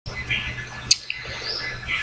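Bird chirps in the background, short high calls scattered over a low steady hum, with the sharpest chirp about a second in.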